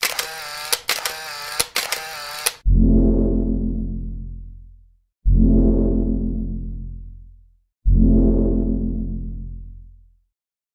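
Edited-in sound effects: a wavering, warbling tone broken by several sharp clicks, then three deep low notes struck about two and a half seconds apart, each ringing out and fading away.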